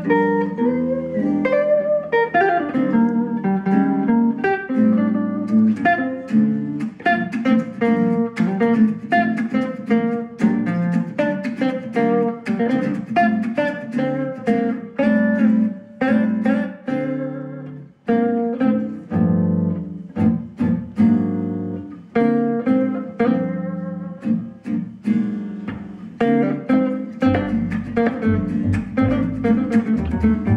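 Jazz manouche trio playing live: lead and rhythm acoustic guitars with a double bass, a dense run of quick plucked guitar notes over a steady bass line.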